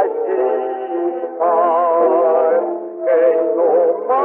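An early 78 rpm record from 1926 of a small band playing a tango fado: a melody of long held notes with vibrato over sustained accompaniment. The sound is thin and narrow, with no deep bass and no bright top.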